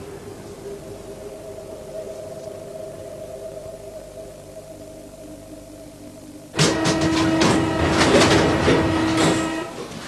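About six seconds of quiet steady background hum, then a sudden loud passage of a train ride: a steady whine with rapid clattering and rattling, running for about three seconds.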